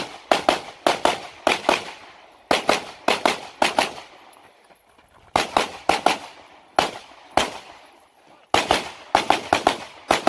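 Pistol shots fired mostly in fast pairs, about two dozen in all. They come in several strings, with pauses of about a second between strings.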